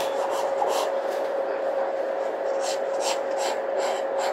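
Pencil strokes scratching on drawing paper as a figure is shaded: a few scattered strokes, then a quicker run of short strokes in the second half. A steady background hum runs underneath.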